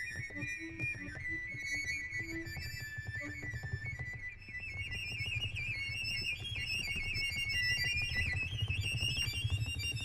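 Cello and accordion duo playing live: a high melodic line over a low held drone. After a brief dip about four seconds in, it breaks into quick, busy high notes.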